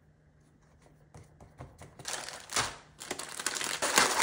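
Plastic Oreo cookie package being torn open and its wrapper peeled back: loud crinkling and tearing starting about halfway in, in two bursts, the second longer. Before that, faint soft pats of hands pressing cookie dough into a foil pan.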